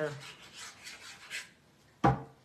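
Liquid glue bottle's applicator tip rubbed quickly back and forth across the back of a cardstock panel: a run of short scratchy strokes for about a second and a half, then it stops.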